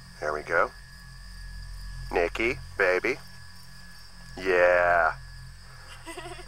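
Crickets chirring steadily at a high pitch in the background. Short bursts of voices break in, and a longer drawn-out vocal sound about four and a half seconds in is the loudest thing.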